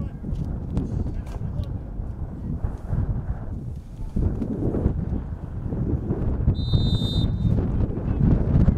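Referee's whistle blown once for the kickoff, a single high blast of a little under a second near the end, over a steady low rumble on the microphone.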